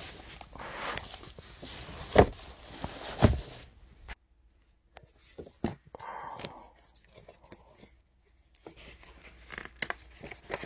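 Plastic bag crinkling and items being shifted in a cardboard box, with two sharp knocks about two and three seconds in. After a sudden break to silence, stiff card and paper slide and tap as a folder is handled.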